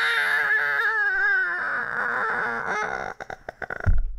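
A long, wavering baby-like wail, as of a giant baby falling, held for about three seconds and then breaking up into short sobs. A heavy, deep thud lands just at the end.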